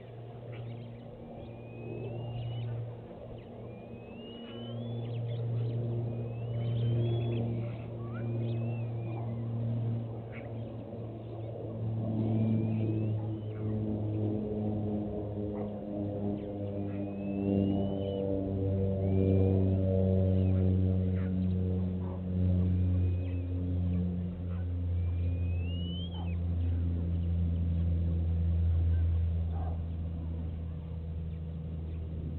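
A motor vehicle's engine runs low and steady, growing louder after the first few seconds with its pitch shifting in steps. Over it, birds give short rising chirps every second or two.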